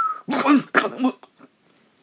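A man clearing his throat: a few short, rough vocal sounds in the first second, just after a falling whistled tone dies away.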